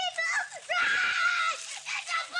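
A young boy screaming and yelling in a high-pitched voice: a short cry, then a longer held scream lasting about a second, then another cry near the end.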